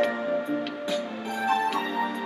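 Instrumental backing track of a slow ballad: sustained chords with a soft percussion hit a little under once a second, no voice.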